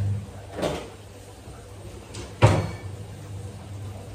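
A steady low electric hum cuts off at the very start, followed by a soft knock just under a second in and a louder, sharp knock of something hard being set down or shut about two and a half seconds in.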